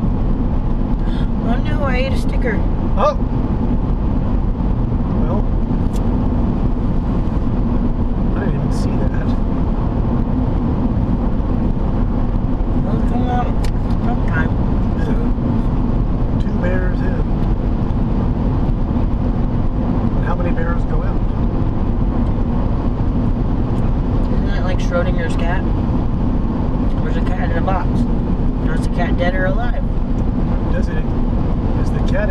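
Steady road and engine noise inside a moving car's cabin at highway speed: a constant low drone with a steady hum. Faint voices come and go at intervals over it.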